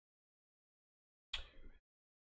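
Near silence, broken about three-quarters of the way through by one brief sound with a sharp start, lasting about half a second.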